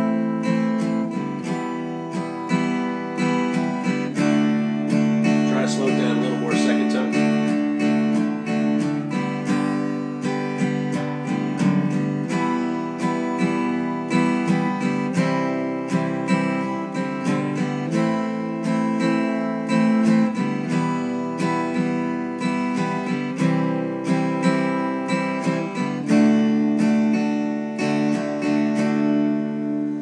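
Steel-string acoustic guitar, a Gibson dreadnought, strummed at a slow, even pace through the chords G, E minor, C, A minor and D. Single-note passing runs link G to E minor and C to A minor.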